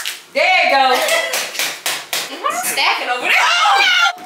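Several women's excited voices shouting and shrieking over one another, with a few sharp hand claps in the middle.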